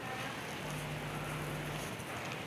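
Faint background noise with a low steady hum that comes in about half a second in and stops just before the end.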